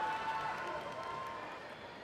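The announcer's voice over the arena's public-address system dying away in the hall's echo after a name is read, fading over the gap into the low, steady noise of the large hall.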